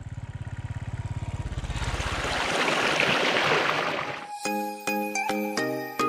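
A motorcycle rides up and passes close by. A steady low engine throb gives way to a rush of passing noise that swells and fades between about two and four seconds in. Music with bell-like notes starts at about four seconds in.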